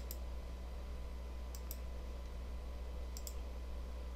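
Two pairs of faint computer mouse clicks, about half a second in and again a little after three seconds, over a steady low electrical hum.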